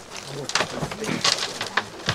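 Handfuls of loose earth thrown into a grave, landing in a few scattered, gritty strikes, with low murmured voices underneath.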